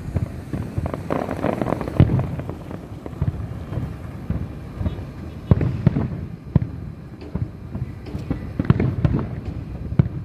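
Aerial fireworks bursting in a rapid, irregular series of bangs and crackles over a low rumble, with the loudest reports about two, five and a half and nine seconds in.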